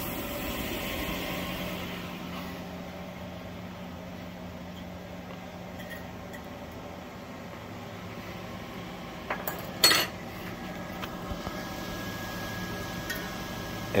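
Flufftastic cotton candy machine running: a steady hum from the motor spinning its heated sugar head, with a few small clicks and one sharp metallic knock about ten seconds in. The head is flinging the sugar straight out against the bowl instead of spinning proper floss, a fault the owner says it should not show.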